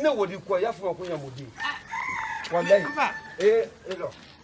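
A rooster crowing once, a single held call in the middle, over a man's shouting voice.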